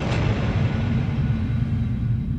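A sudden hit that opens straight into a steady, deep rumbling drone: a film trailer's sound-design rumble.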